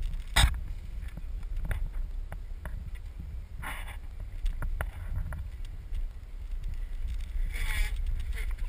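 Low rumbling wind noise on the camera's microphone, with scattered clicks and a few sharper knocks, the loudest just after the start.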